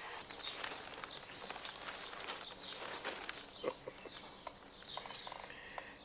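Faint outdoor ambience with scattered faint bird chirps.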